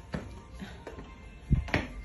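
Footsteps climbing stairs: a few separate steps, the heaviest and deepest thud about one and a half seconds in, with music faintly in the background.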